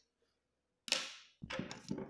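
A clear plastic ruler is set down on paper with one sharp clack about a second in, followed by shorter scraping noises as it slides into place.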